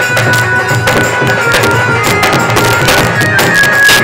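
Instrumental passage of Bengali baul folk music: a held, sustained melody line over a steady beat of drum strokes, with no singing.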